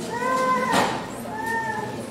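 A high-pitched voice making two short, drawn-out cries that rise and fall in pitch, one near the start and one past the middle, with a brief noisy burst between them.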